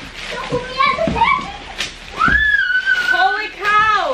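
A young child's high-pitched voice calling out without clear words, with a long high call about two seconds in, over the crinkling of a large plastic bag being pulled off the wagon.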